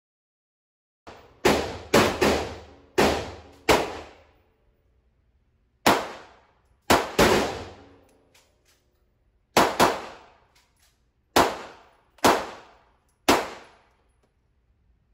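About thirteen shots from a Makarov pistol in an indoor range, each followed by a decaying echo. They come in uneven strings: five in quick succession starting about a second and a half in, three more around the middle, then five spaced out toward the end.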